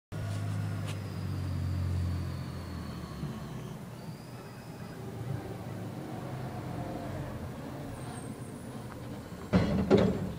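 Diesel garbage truck running as it approaches, a steady low engine drone that is loudest in the first couple of seconds and then eases. Near the end comes a sudden loud knock as it pulls up.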